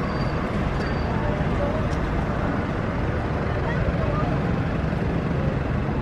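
A steady rushing noise that holds an even level throughout.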